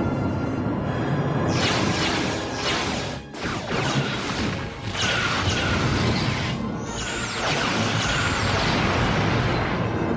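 Dramatic orchestral battle music mixed with sci-fi starship weapon fire and explosion effects, dipping briefly about three seconds in.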